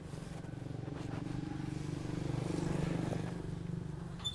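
A motor vehicle's engine passing by: a low steady hum that grows louder to a peak about two and a half seconds in and then begins to fade.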